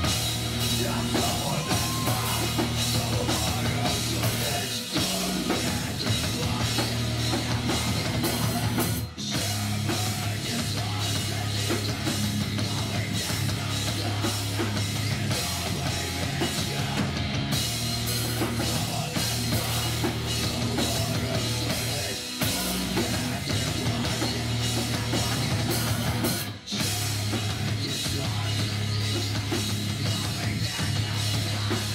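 A heavy metal band playing live: pounding drum kit, distorted guitars and bass in a dense, loud wall of sound, with a few momentary breaks in the playing.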